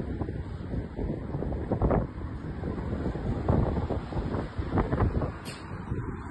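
Wind buffeting a phone's microphone outdoors: a steady low rumble with several stronger gusts.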